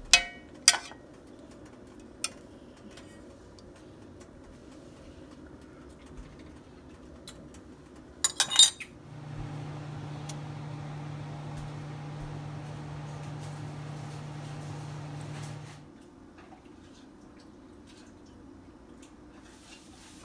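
A spoon clinking against a stainless steel cooking pot: a few sharp knocks in the first second and another burst of clinks about eight seconds in. After that, a steady low hum runs for about six seconds and stops suddenly.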